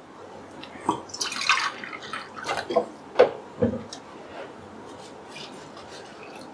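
Water being poured into a pressure cooker of lentils and vegetables: irregular splashing and trickling, most active in the first four seconds, then fainter.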